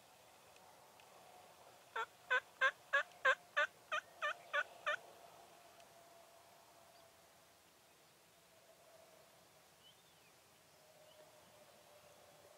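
A run of about ten evenly spaced turkey yelps, roughly three a second, lasting about three seconds and then stopping.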